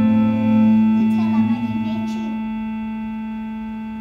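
Digital piano: a held chord rings and slowly fades, with a few soft notes added in the first couple of seconds.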